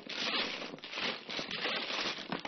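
Mahjong tiles being shuffled by hand on a tabletop: a dense, continuous clattering rattle.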